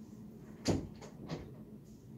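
A short, dull knock about two-thirds of a second in, followed by two fainter knocks.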